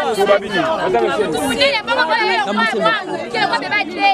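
Speech only: a woman talking into a handheld microphone, in a language the recogniser did not write down.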